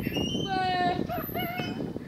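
Children's voices calling out in long held notes, without words, over small scattered knocks and scuffs.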